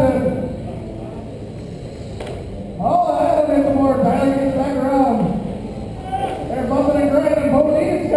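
Motors of several 1/10-scale electric World GT on-road RC cars whining, the pitch rising and falling as the pack accelerates and brakes around the track. The sound fades in the first seconds, then rises sharply in pitch and loudness about three seconds in as the cars accelerate. It dips again around six seconds before building back.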